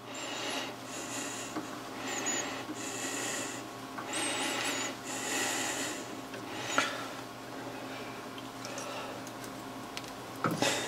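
Compound-slide leadscrew being turned by hand into a freshly cut internal thread, metal threads rubbing in a series of short strokes, each under a second, to test the fit. The rubbing quietens after about six seconds, with a single sharp click near seven seconds.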